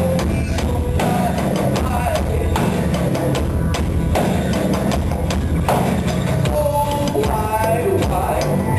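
Live music from the Magic Pipe, a homemade electric instrument of steel pipes strung with a bass string: a deep, pulsing bass line over a steady beat of clicks and drum hits.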